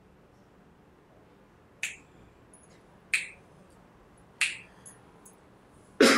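Three sharp snaps, evenly spaced about a second and a quarter apart, each with a brief ring, over quiet room tone; they signal the end of a silent loving-kindness meditation.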